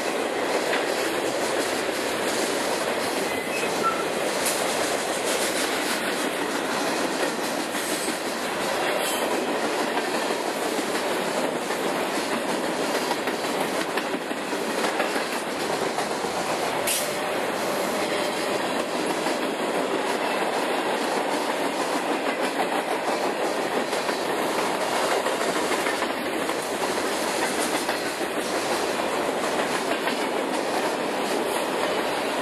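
Freight cars (boxcars, an autorack, covered hoppers) rolling past close by: a steady, even rush of steel wheels on rail with occasional faint clicks.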